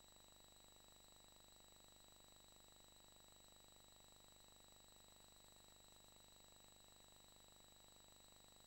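Near silence: only a faint steady electrical hum with a thin, unchanging high-pitched whine, with no event in it.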